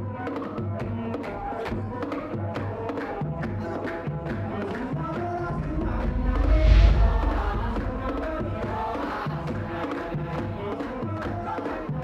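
Background music for a title sequence: layered melodic music at a steady level, swelling to a deep boom about halfway through.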